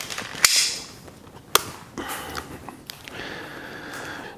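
Camera handling noise: two sharp clicks about a second apart, the first followed by a brief rustle, then faint rubbing and hiss as the camera is moved in close.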